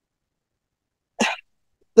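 A single short cough from a woman about a second in, with sharp onset; the rest is silence.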